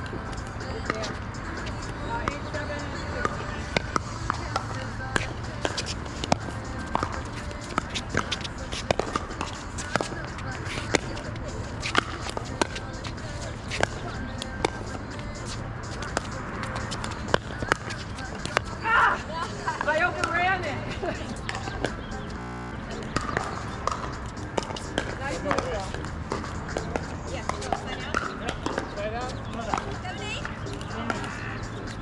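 Pickleball paddles striking a plastic pickleball in a doubles rally: sharp pops, about one a second through the first half, more spread out later, with a ball bounce on the court before the serve.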